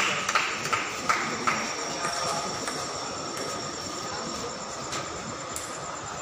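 Table tennis ball clicking about three times a second for the first second and a half, then one more click near the end, over the steady murmur of a large hall.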